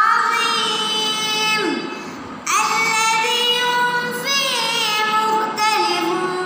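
A young boy's voice chanting Quranic recitation (tilawah) in long, melodically held notes with ornamented pitch turns. There is a brief pause for breath about two seconds in, then the chant resumes.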